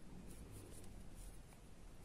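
Faint light clicks and scratchy rustling of metal knitting needles and yarn as stitches are worked.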